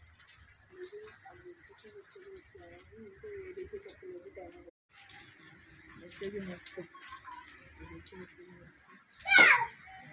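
Steady rain falling, with voices talking in the background, children's among them. About nine seconds in, a single loud, short, wavering high cry cuts across it.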